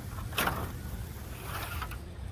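A slatted wooden frame being set down and shifted on dry grass and dirt: light scraping and rustling, with one brief louder scrape about half a second in.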